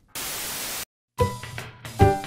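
A short burst of steady static hiss, like a television losing its signal, that cuts off abruptly after under a second. After a brief silence, music starts about a second in, opening on a held note.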